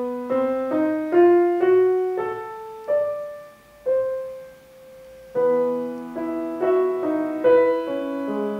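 Grand piano played solo: notes struck one after another in a slow rising line, then one note held and left to fade for over a second before the playing resumes with fuller chords about five seconds in.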